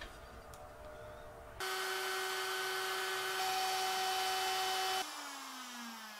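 Plunge router running at a steady high whine while routing the carbon-rod channels in a walnut neck blank, then switched off about five seconds in and spinning down with a falling whine.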